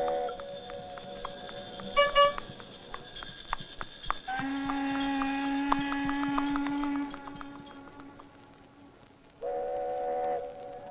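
Cartoon film score: held orchestral notes over a run of light clip-clop clicks for a trotting carriage horse, with two sharp strikes about two seconds in. A long low note is held from about four seconds in to seven seconds in. It then fades almost away before the music returns near the end.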